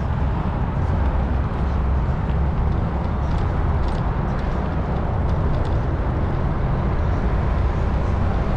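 Steady wind rumble on a GoPro Hero 9's built-in microphone while riding a bicycle, heaviest in the low end, with a few faint clicks.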